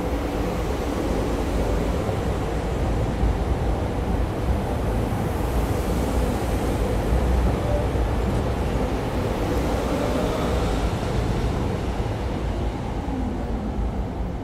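SEPTA Regional Rail electric commuter train running past the platform: a steady rumble of wheels on rail that eases off near the end as the last car goes by.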